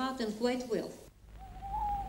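A voice speaking, then after a cut a single held tone, rising slightly and falling away, over a low hum.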